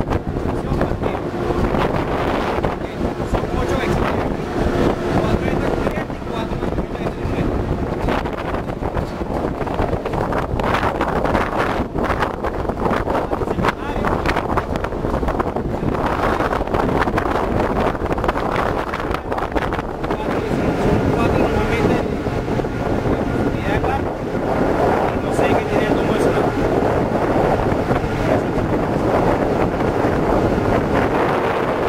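Wind buffeting the microphone on a warship's open deck, a steady rushing noise with no break.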